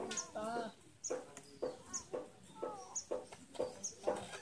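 Chickens clucking, short calls about twice a second from about a second in, with short high bird chirps repeating over them.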